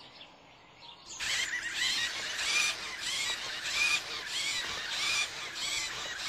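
A quick, even series of high, squeaky chirps, about three a second, starting about a second in. They sound like a robot's electronic chirping.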